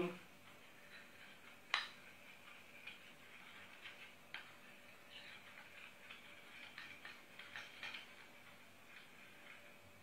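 Metal teaspoon stirring in a small glass bowl, giving faint, irregular clinks against the glass, the sharpest about two seconds in.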